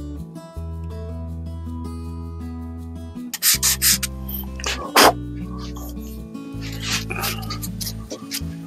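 Background music with held notes throughout. From about three and a half seconds in, a run of short rasping strokes of 150-grit sandpaper wrapped around a socket being rubbed by hand along the curve of a wooden rifle stock.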